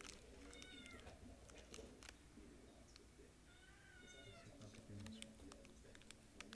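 Faint sounds: two short high-pitched calls from an animal, one about half a second in and one arching call around the fourth second, with light crinkles and clicks from a foil chocolate wrapper being handled.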